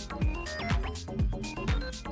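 Electronic dance music from a live DJ mix: a steady kick drum about twice a second, with hi-hat ticks between the beats and short synth notes.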